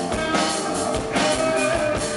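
Live rock band playing: electric guitar and bass over a drum kit keeping a steady beat.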